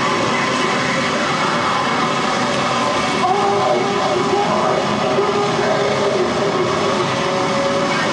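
Live noise music played on a table of electronics and effects pedals: a loud, unbroken wall of harsh noise, with wavering tones rising out of it about three seconds in.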